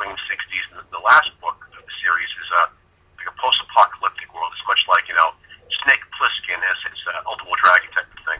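Continuous talking over a telephone line, the voice thin and narrow-sounding.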